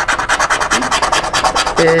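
Scratch-off lottery ticket being scratched by hand: rapid, quick rasping strokes across the ticket's scratch-off coating, about a dozen a second.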